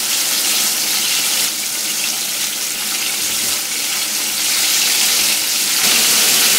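Flour-coated chicken wings deep-frying in a pot of hot oil: a steady, loud sizzling hiss of bubbling oil.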